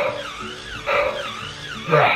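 Walking toy dinosaur playing its built-in electronic sound effects through a small, tinny speaker: a pattern of warbling, gliding tones repeats about once a second.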